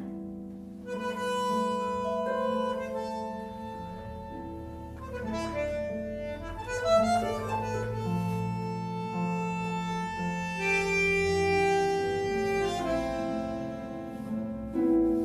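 Bandoneón playing a tango passage of long held notes and chords, with a pedal harp plucking beneath it.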